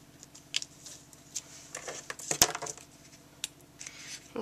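Quiet hand handling of cardstock and double-sided adhesive tape: faint rustles and small clicks, with one sharp click a little past halfway.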